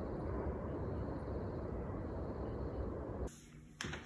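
Steady outdoor background noise, mostly a low rumble with no distinct events, cutting off abruptly a little after three seconds in.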